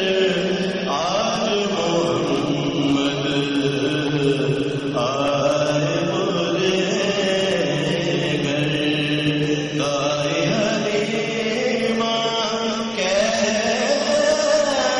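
A man reciting an Urdu naat, a devotional chant sung in long, melodic held phrases without pause.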